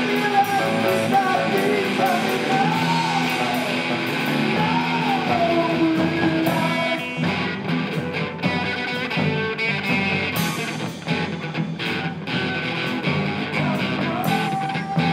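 Live rock band playing electric guitars and a drum kit. Over the first half a lead line bends up and down in pitch; after that the playing turns choppier, with sharp drum hits and stabbed chords.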